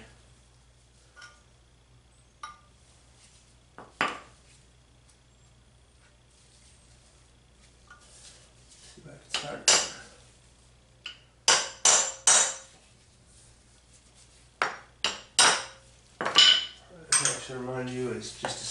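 Brass-headed hammer striking a steel punch set against the bearing on a motorcycle steering stem, driving the bearing off: sharp metallic clinks at uneven intervals. A few light taps come in the first few seconds, then a run of harder blows from about nine seconds on.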